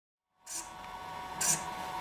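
King Max CLS0512W thin-wing servo with an all-metal gear train, cycling a long pointer arm back and forth: short whirs about once a second over a faint steady hum.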